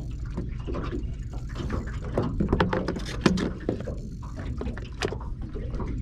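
Steady low rumble of wind and water around a small boat, with a run of sharp clicks and knocks from about two seconds in, loudest just past the middle.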